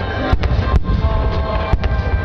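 Fireworks bursting: about five sharp bangs over a continuous low rumble.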